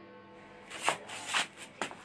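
Four short, soft rustling scuffs over faint background music holding a steady tone.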